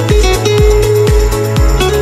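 Background electronic music with a steady kick drum beat, about two beats a second, under a bass line and sustained melodic notes.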